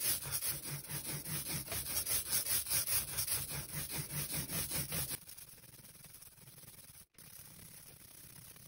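Soft rubber roller being rolled quickly back and forth through tacky relief ink on an inking plate, blending two colours into a rainbow roll: a rapid, even rubbing of several strokes a second. It stops suddenly about five seconds in.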